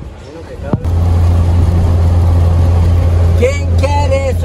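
Steady low engine and road drone of a Lada Niva, heard from inside the cabin while driving. It starts suddenly about a second in, just after a short click, and a voice comes in near the end.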